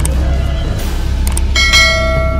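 Dramatic background music: a steady low drone, with a bell-like metallic strike near the end that rings on.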